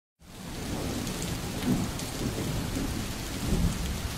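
Steady rain with low thunder rumbling under it, fading in quickly at the start, the rumble swelling near the end.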